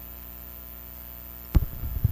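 Steady electrical mains hum on the commentary audio feed, with one sharp knock about three-quarters of the way through.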